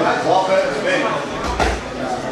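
Ringside voices shouting and calling out during a kickboxing bout, with a single dull thud about one and a half seconds in.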